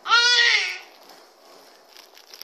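A young child's single high-pitched squeal, about two-thirds of a second long, dropping in pitch at the end, then only faint background noise.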